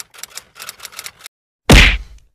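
Typewriter-style clicking sound effect, about eight quick clicks in a little over a second, matching on-screen text typing in letter by letter, then one loud whoosh-and-hit sound effect near the end.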